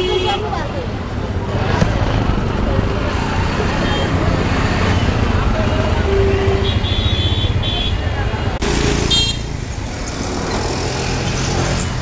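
Busy street market noise: a steady mix of many people's voices and passing vehicle engines, with short horn honks about halfway through and again a little later.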